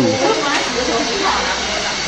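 Indistinct voices over a steady hiss of shop noise.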